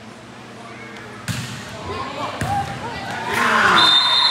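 A volleyball is struck twice, about a second apart, with sharp hand-on-ball hits during a rally. Near the end, players and spectators break into loud shouting.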